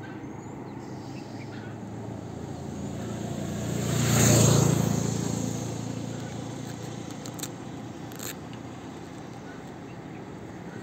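A vehicle passes by on the road, its sound rising to a peak about four seconds in and fading away, over the steady low idle of a parked motorcycle's engine.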